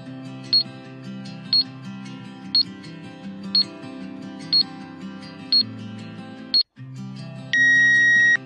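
Quiz countdown over looping background music: seven short ticks, one each second, a brief gap in the music, then a loud steady electronic beep lasting about a second as the timer runs out.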